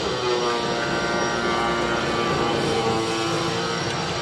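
A motor or engine running steadily, giving a pitched drone with many overtones.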